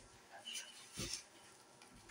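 Faint handling noise from a Ghostface mask and its cloth hood being worked over a dummy head, with two soft bumps about half a second and a second in.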